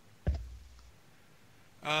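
A single sharp click with a short low thud behind it, about a quarter second in, then near-silent room tone until a man starts to speak near the end.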